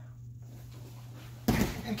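Two grapplers rolling over together and landing on a foam grappling mat: one heavy thump about one and a half seconds in.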